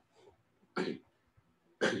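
A man coughing: two short coughs about a second apart, the second near the end.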